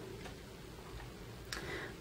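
Quiet room tone with faint ticking, and a short intake of breath about one and a half seconds in, just before speech resumes.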